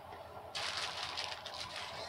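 Plastic poly mailer bag crinkling and rustling as a hand reaches in and rummages inside, starting about half a second in.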